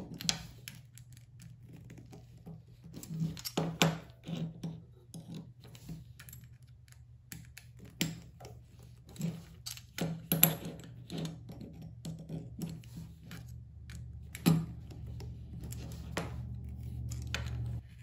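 Small metal clicks and taps, irregular and scattered, from a precision screwdriver and pliers tightening the screws into a caster wheel's brass standoffs. A faint steady low hum lies underneath.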